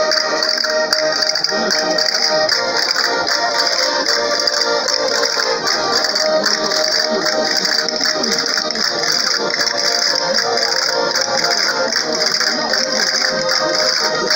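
Live accordion music playing steadily for dancing.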